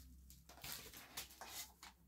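Near silence over a faint low hum, with a few soft taps and rustles from packaging and a small box being handled.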